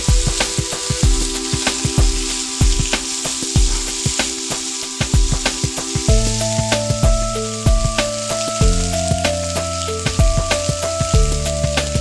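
Pork ribs sizzling on a tabletop electric grill plate surrounded by simmering broth, with a spoon scraping seasoning paste onto the meat. Background music with a steady beat and held chords plays over it.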